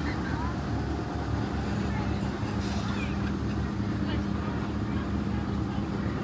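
Steady low rumble of outdoor background noise, with a steady low hum joining about a second and a half in.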